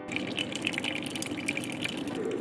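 A stream of hot water pouring steadily into a ceramic mug for tea.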